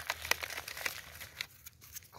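Loose, fine soil sprinkled by a gloved hand onto vegetable scraps in a cut-down plastic bottle: a run of small scattered clicks and rustles that thins out about a second and a half in.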